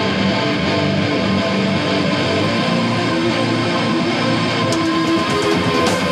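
Live rock band playing an instrumental passage without vocals, electric guitar to the fore over sustained backing.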